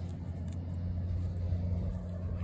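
A steady low mechanical hum, like an idling engine or motor.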